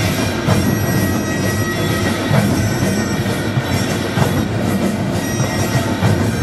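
Korean traditional percussion for a massed drum dance: many hand drums struck together with metal gongs, forming a dense, continuous wash of sound with irregular sharp strokes.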